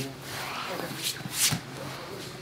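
Gi fabric rustling and bodies shifting on foam training mats as grapplers drill, with two brief scuffs about one and one and a half seconds in.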